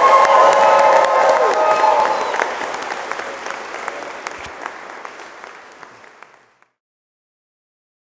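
A congregation applauding, with held whoops and cheers from the guests over the first two seconds or so. The applause then fades away and is gone at about six and a half seconds.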